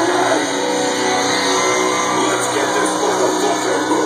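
Heavy metal band playing live at full volume: electric guitars, bass and drums, with held chords ringing steadily, heard from within the crowd.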